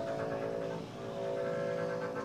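Quiet passage of live improvised jazz: several sustained, overlapping held notes, with electric guitar among them.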